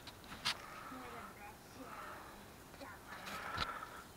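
Quiet background with faint, distant voices and a couple of small clicks, one about half a second in and another, with a low thump, about three and a half seconds in.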